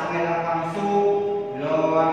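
A man's voice drawing out long, steady syllables almost on one pitch, shifting to a new pitch near the end: slow, sing-song speech.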